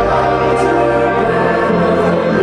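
A rock band playing live, heard from inside the crowd: loud music with sung, choir-like vocals over sustained chords.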